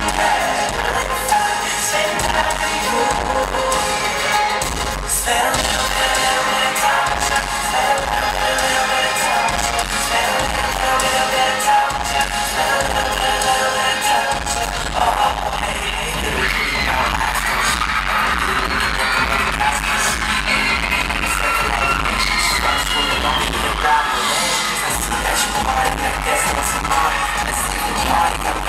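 Live pop band playing a song, with drums and a male lead vocal coming and going over it.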